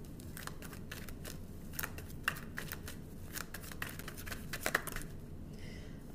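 Tarot cards being shuffled and handled while clarifier cards are drawn: a run of irregular short snaps and flicks over a low steady hum.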